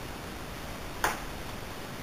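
A single sharp click of kitchen utensils about a second in, like light metal tapping metal or porcelain, against quiet room tone.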